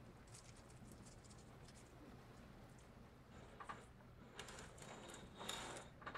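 Near silence with faint rustling and light clicks from flower stems and leaves being handled in the arrangement, a little louder about five and a half seconds in. A faint steady room hum lies underneath.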